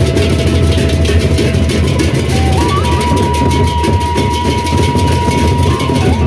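A Sasak gendang beleq ensemble playing in procession: pairs of large hand cymbals clash in a fast, continuous rhythm over heavy big drums. A held high tone runs above them and steps up in pitch about two and a half seconds in.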